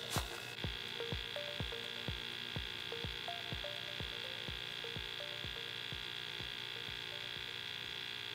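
Pumped MultiRAE gas monitor's internal sampling pump running steadily, drawing calibration gas from the cylinder's on-demand regulator during a span calibration. It makes a low hum with soft pulses about three times a second, which fade after the middle.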